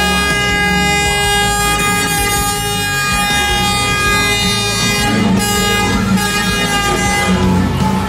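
Loud walkout music over an arena sound system: long held chords that change every two to three seconds.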